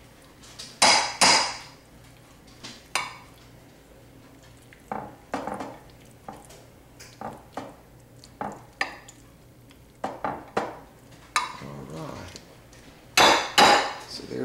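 Metal utensils clinking and scraping against a glass mixing bowl and glass Pyrex baking dishes while cheese filling is scooped and spread. The sounds are irregular separate knocks, loudest twice about a second in and again near the end.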